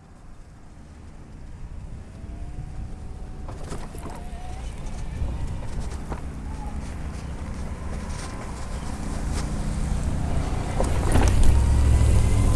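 Pride Quantum Edge 3 Stretto mid-wheel-drive power wheelchair driving on concrete: a low motor-and-tyre rumble with a faint whine that grows steadily louder as the chair approaches.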